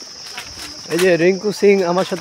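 Insects keeping up a steady, high-pitched drone, with a man's voice starting about a second in.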